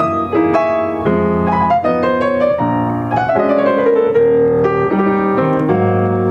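Upright piano playing a solo passage of a slow jazz ballad, chords under a melody line, with a falling phrase in the middle.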